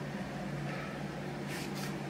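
Fans running: a steady low hum with a faint airy hiss.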